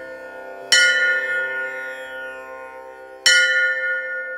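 A bell struck twice, about two and a half seconds apart, each strike ringing on and slowly fading.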